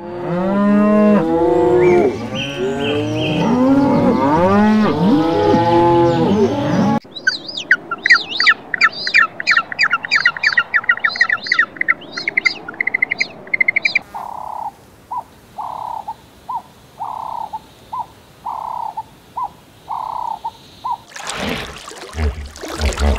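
A herd of Hereford cattle mooing, many overlapping low calls for about seven seconds. Then emperor penguin chicks giving rapid high rising whistles, about three a second. In the last third comes a run of short, evenly spaced calls of another animal, about one a second.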